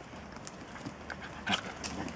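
Puppies play-fighting on concrete: scuffling, with scattered clicks of claws and paws, and a short louder sound about one and a half seconds in.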